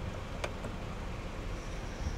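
Steady low hum inside the cabin of a Honda Freed with its engine idling and the air-conditioning blowers running, with a single light click about half a second in.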